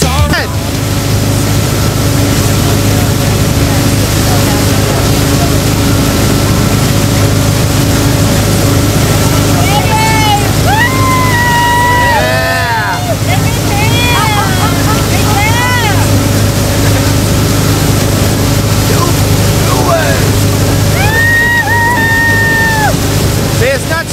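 Motorboat engine running steadily under way, a low even hum over the rush of wind and churning wake. Voices call out in long drawn-out calls twice, about ten seconds in and again about twenty seconds in.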